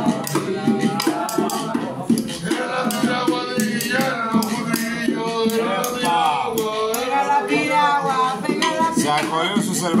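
Voices singing over hand percussion: a stick scraped along a metal box used as a güiro, a wooden scraper and a small hand drum keeping an even rhythm.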